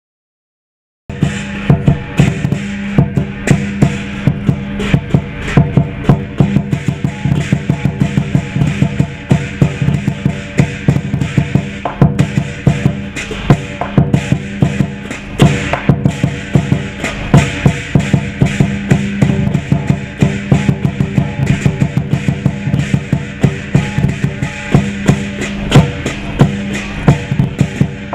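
Chinese lion-dance percussion: a large lion drum beaten in a fast, driving rhythm with hand cymbals clashing along. It starts suddenly about a second in.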